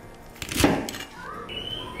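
One chop of a cleaver through a bunch of winged beans onto a plastic cutting board, about half a second in. Near the end a short rising tone and then a thin steady high tone are heard.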